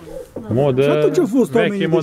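Speech only: a man's voice talking in Romanian.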